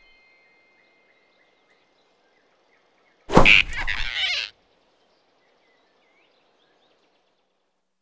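Animated-film sound effect: a sudden loud whoosh about three seconds in, lasting about a second, as the rabbit snatches the flying squirrel. Around it only faint forest ambience with soft bird chirps.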